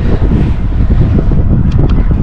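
Wind buffeting the microphone: a loud, steady low rumble.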